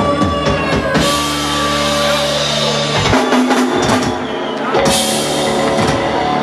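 Live rock band playing electric guitars, bass guitar and drum kit: held chords with loud drum-kit strikes and crashes about a second in and again near the end.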